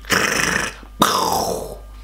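A man laughing loudly in two long, rough, breathy bursts, the second trailing down in pitch.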